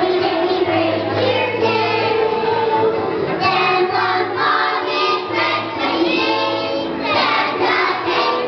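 A children's choir singing together with musical accompaniment.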